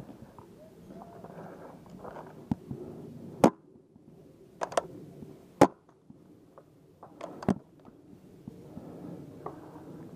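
Paintball markers firing single shots: about eight sharp pops spread irregularly, some in quick pairs.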